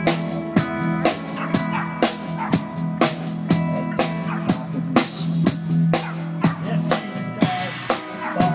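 A live band playing: a drum kit keeping a steady beat under guitar, keyboard and steel drum.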